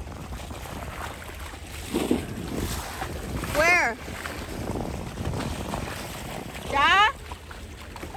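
Wind buffeting the microphone over small waves lapping against the bank, with two brief, high-pitched voice calls, one in the middle and one near the end.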